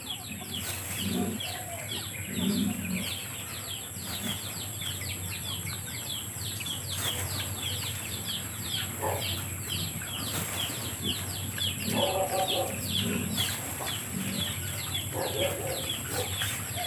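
Birds chirping rapidly in the background, several short downward chirps a second, with a few lower clucking calls from chickens now and then.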